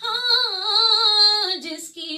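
A woman singing an Urdu naat into a microphone, holding one long wavering note that slides down about one and a half seconds in, then a short break near the end.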